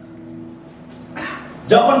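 A man's voice preaching through a microphone, breaking off in a short pause and then starting again loudly near the end with an emphatic word. A faint steady held tone hums underneath the pause.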